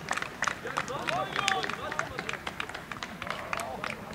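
Distant shouting voices of players and spectators across an open football pitch, over a scatter of sharp, irregular claps.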